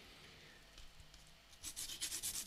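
A pencil point rubbed back and forth on the sandpaper of a sharpening pad. After a quiet stretch with a few faint scratches, quick, evenly spaced scratchy strokes begin about one and a half seconds in.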